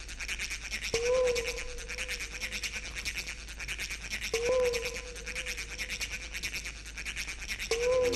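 Breakbeat-rave music intro over a sound system: a fast, even hissing pulse with a held synth tone that swells anew about every three and a half seconds.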